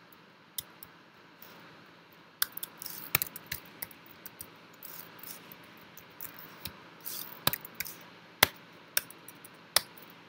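Computer keyboard being typed on: irregular key clicks in short runs, with bunches of quick strokes about two and a half seconds in and again near eight seconds.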